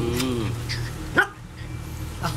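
Small long-haired dog giving one short, sharp yap just past the middle.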